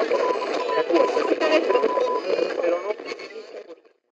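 Outro sound effect in the style of a radio transmission: garbled, radio-sounding voices over a beeping tone in short and long pulses. The beeping stops about two seconds in, and the rest fades out over the last second.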